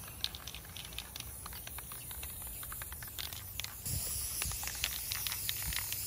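Aerosol spray paint can in use: many short, irregular ticks and clicks, then a steady hiss of spraying that starts a little under four seconds in.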